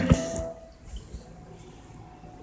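A couple of sharp knocks as the recording device is handled, then quiet room noise with faint scattered clicks.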